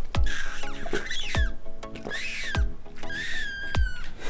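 Squeaky, whistling sucking on the spout of an insulated water bottle, in three short squeals that glide up and down in pitch.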